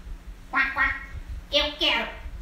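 A woman imitating a duck's quacking with her voice, four short calls in two pairs.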